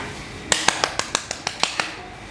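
A short run of about nine quick, evenly spaced hand claps, starting about half a second in, right after an acoustic guitar song ends.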